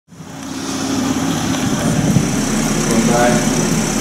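A car engine running steadily, fading in over the first second, with a faint voice near the end.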